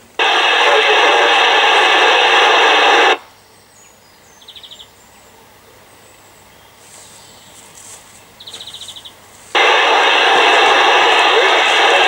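CB radio receiver's speaker giving two bursts of a weak, noisy received transmission, each a few seconds long, the speech buried in static: a distant mobile station near the edge of range of a makeshift base aerial. In the quiet gap between them, two brief faint chirps.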